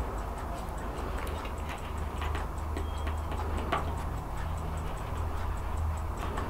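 A clock ticking steadily at about two ticks a second, with the handling and rustle of stiff photo-album pages, loudest briefly near the middle, over a low steady hum.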